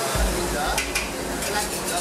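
Noodles sizzling in a hot carbon-steel wok while a metal wok ladle stirs and scrapes through them, with a couple of sharp clinks of ladle on wok near the middle. A low rumble sets in just after the start.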